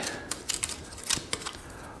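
Light wooden clicks and taps of craft sticks as one is picked from a loose pile and handled: several small separate clicks spread over two seconds.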